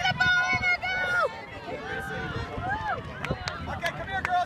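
Sideline spectators shouting and calling out to young players, high-pitched voices rising and falling in short, broken calls.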